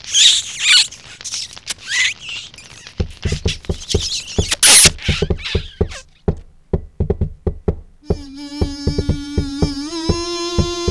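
Cartoon kissing sound effects: squeaky smooching noises for the first few seconds. Then a run of sharp knocks, the loudest about five seconds in. Near the end, music starts with a held note over plucked notes.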